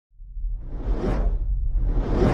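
Whoosh sound effect over a deep low rumble, swelling in from silence to a peak about a second in; a second whoosh builds near the end.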